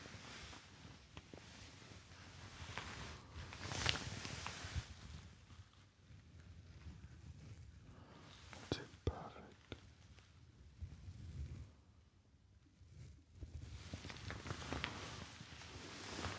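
Soft, irregular rustling of a cotton shirt sleeve and hand movements close to a binaural microphone, with a few light clicks and a quietly spoken "perfect" about halfway through.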